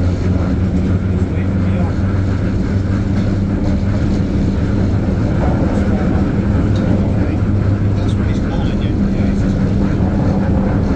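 A train running slowly along the track, heard through its open window: a steady low hum over an even rumble, with a few faint ticks.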